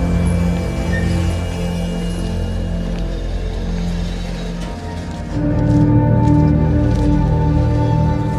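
Music with slow, sustained held notes and low tones. About five seconds in, a louder layer of held notes comes in.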